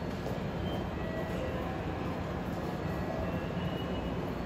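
Steady hum and low rumble of Kintetsu electric trains standing idle at the platforms of a covered terminal station, with faint, brief high tones now and then.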